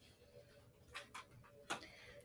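Faint ticks and scratches of a pen writing a word on paper, with a few sharper ticks about a second in and near the end, over a faint steady hum.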